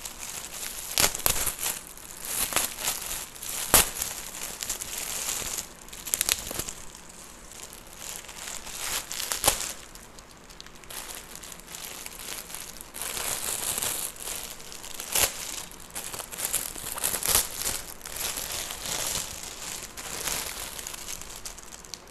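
Shiny metallic gift wrap, and then a clear plastic packet, crinkling and tearing as a present is unwrapped by hand. The sound comes in irregular bursts of crackling with a few sharp crackles.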